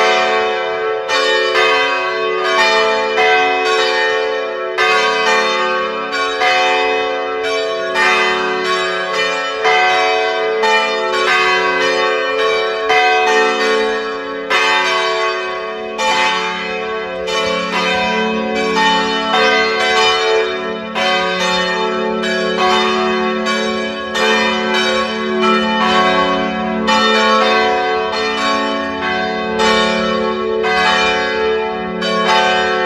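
Church tower bell ringing repeatedly, a stroke about every second, each stroke ringing on over the next.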